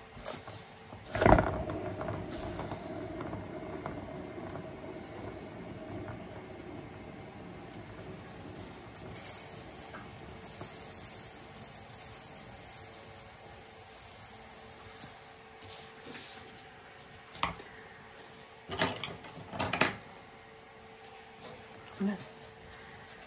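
A paint-pouring turntable set spinning with a sharp knock about a second in, then its bearing whirring steadily as it turns, slowly fading. A few knocks near the end as it is handled and brought to a stop.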